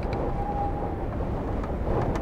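Wind buffeting the microphone outdoors: a steady low rumble with no distinct events.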